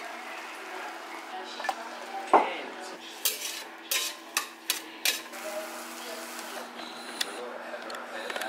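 A spatula scraping and knocking against a stainless steel frying pan while scrambling eggs with peppers, with faint sizzling. There is one sharp knock a couple of seconds in, then a quick run of metallic clinks, over a steady low hum.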